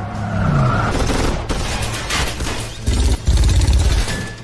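Loud action-film sound effects: a dense run of crashes and sharp impacts, ending in a heavy low rumble in the last second.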